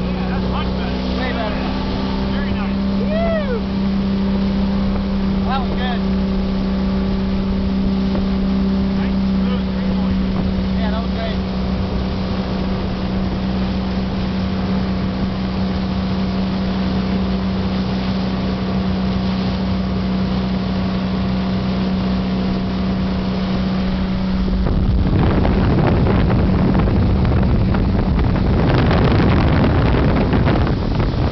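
Tow boat engine running at a steady pitch while pulling a barefoot water skier at speed. About 25 seconds in, the engine tone is drowned by a loud rushing of water spray and wind.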